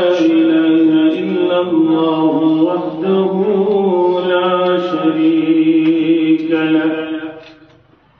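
A man's voice chanting Arabic recitation through a microphone, holding long, steady notes. It fades out near the end.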